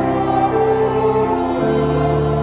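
Church congregation singing a hymn together from hymnals, with sustained instrumental accompaniment. The held chord changes about one and a half seconds in.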